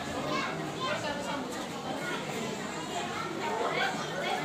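Many children's voices chattering at once in a large hall, fairly quiet, with no recitation going on.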